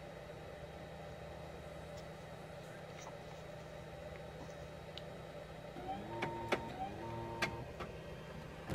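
XYZ da Vinci 1.0 3D printer running a faint, steady hum as it heats up. About six seconds in come two short motor whines about a second apart, each held at one pitch, with a few light clicks between them: the printer's motors moving the print head or bed.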